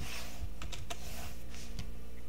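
Several scattered clicks from a computer keyboard at the recording desk, with a couple of soft rushing noises, over a steady low electrical hum.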